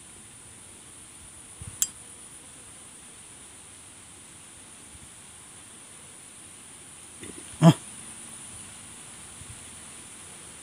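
Faint steady insect chorus, with a small click about two seconds in and one short, sharp smack from the eel hole near the three-quarter mark: an eel striking the shrimp-baited hook in its burrow and stripping the bait.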